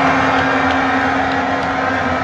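A single steady low note held unchanged throughout, over the noise of a crowd clapping.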